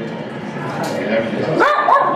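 A dog whimpering and yipping, with a few short high calls near the end, over voices in the background.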